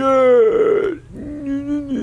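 A man's voice making two long, drawn-out wordless vocal sounds. The first slides slowly down in pitch; the second is steadier and starts after a short break.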